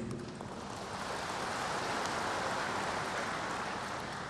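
Audience applauding, building to a peak about halfway and then dying down.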